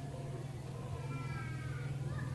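Steady low electrical hum picked up through the lecture microphones, with a faint, high-pitched, drawn-out cry lasting about a second from halfway through.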